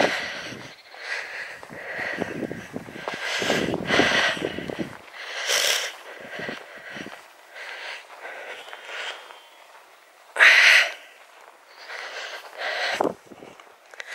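A person's breathing close to the microphone: irregular breathy puffs of noise, the loudest about ten and a half seconds in.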